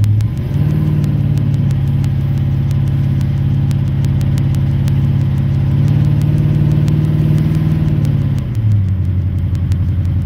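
Oldsmobile 455 big-block V8 with headers and a 3-inch full exhaust, heard from inside the car while driving. Its note dips just after the start, climbs to a steady higher pitch about a second in, and drops back down about eight and a half seconds in.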